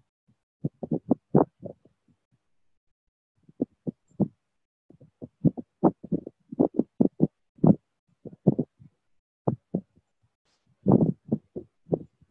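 A run of short, muffled low thumps in irregular clusters, with dead silence between them.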